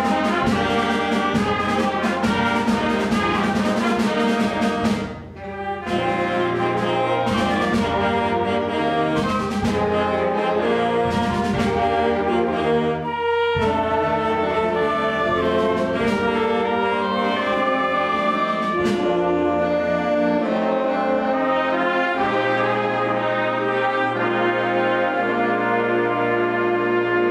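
Concert band playing a full-ensemble piece, with brass and woodwinds carrying the sound. The music briefly drops back about five seconds in, then comes straight back at full level.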